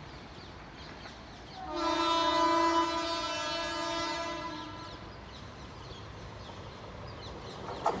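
Indian Railways train horn sounding one long blast, a steady chord of several tones, starting about two seconds in and fading out about three seconds later.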